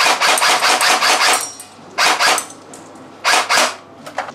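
Tokyo Marui M16 Vietnam electric airsoft gun firing on full auto: a burst of about a second and a half, then two short bursts, each a rapid buzzing run of shots.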